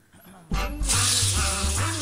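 A cartoon rush of water, a wave flooding in, starts suddenly about half a second in as a loud hiss, over background music with a steady low beat.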